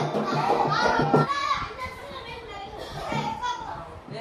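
Children singing into microphones over a backing track with a steady beat; the beat stops about a second in, and children's voices carry on more quietly.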